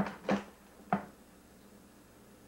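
A few sharp plastic clicks in the first second, the last about a second in, as a cassette tape recorder is handled to turn the tape over, then faint steady room hiss.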